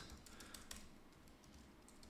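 Faint typing on a computer keyboard: a few scattered, light key clicks.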